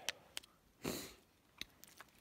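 A person sniffing once through the nose, with a few faint short clicks around it.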